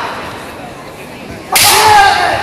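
Kendo kiai shouts echoing in a large hall: one shout's echo fades at the start, then about one and a half seconds in comes a sudden loud shout with a sharp crack of bamboo shinai as the two fencers close to strike.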